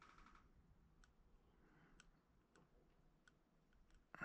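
Near silence, with faint scraping at the start and then about five faint small clicks from a metal sculpting tool working soft modelling clay.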